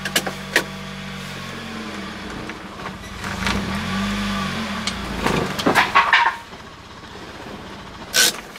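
Mazda Miata's four-cylinder engine running in first gear, its drone sagging in pitch and recovering a few times under load, with a few mechanical clunks. The engine is being dragged down because the newly installed clutch is not disengaging with the pedal fully pressed.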